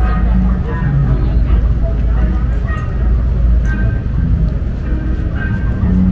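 City sidewalk ambience: pedestrians talking indistinctly nearby over a steady low rumble of street traffic.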